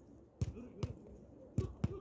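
Basketball bouncing on an outdoor hard court: four sharp thuds, coming in two pairs.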